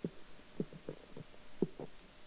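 Handling noise from a gooseneck desk microphone: a string of soft, low knocks at uneven intervals as the stem is gripped and moved, the loudest knock about one and a half seconds in.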